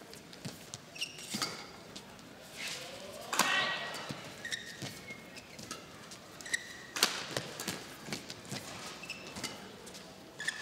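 Badminton rally on an indoor court: several sharp racket strikes on the shuttlecock, the loudest about three and a half and seven seconds in, with short squeaks of court shoes on the floor. A brief player's cry comes with the hit at three and a half seconds.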